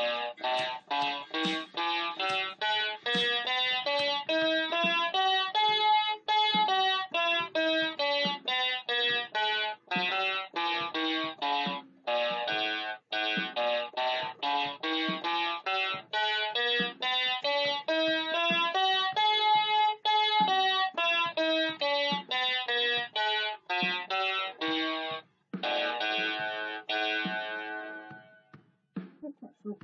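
MQ-6106 61-key electronic keyboard playing single notes of an A-to-A scale (A B C D E F G A), running up and down the scale again and again in a steady stream. It ends on a held A near the end.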